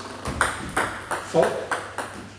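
Table tennis serve, a forehand pendulum backspin-sidespin serve: the ball clicks off the bat and then bounces on the table, a quick run of sharp, light clicks a fraction of a second apart.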